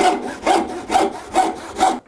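Hand saw ripping along the grain of a board in quick, even strokes, about five in two seconds, each a rasping, hissing cut. The sides of the saw plate have been rubbed with wax so it slides through the cut without binding.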